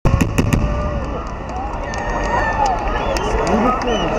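Aerial firework shells bursting, a few sharp bangs in the first half second, followed by scattered faint crackles. Spectators' voices and exclamations rise over them from about a second and a half in.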